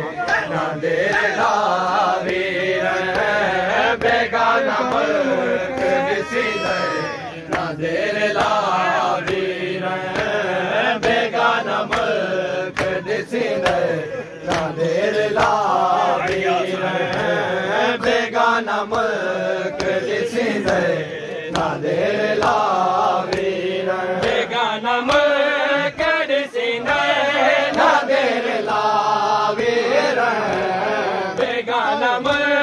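A male reciter singing a noha, a Shia lament, in a melodic chant, with the slaps of mourners beating their chests (matam) running through it.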